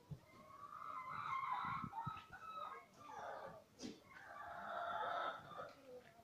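Rooster crowing twice, each call about two seconds long, the second beginning about three seconds in.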